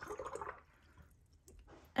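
Paintbrush swished briefly in a jar of rinse water, a soft watery swish in the first half second, then only faint room sound.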